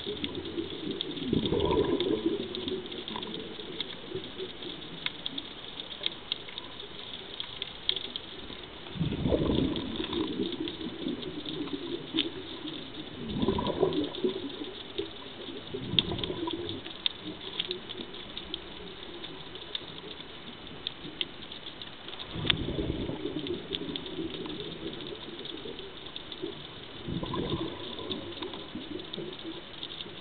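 Scuba regulator exhaust bubbles gurgling out in a burst with each exhale of the diver, about every 5 to 8 seconds. Under them runs a steady fine crackle of underwater clicks.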